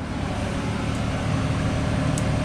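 Steady machinery noise in a yacht's engine room: a loud, even low drone with a fast pulsing in it, heard as the door into the space opens.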